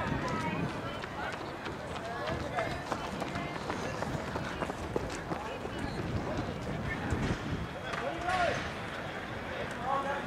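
Indistinct chatter of spectators' voices, with scattered light taps and clicks throughout.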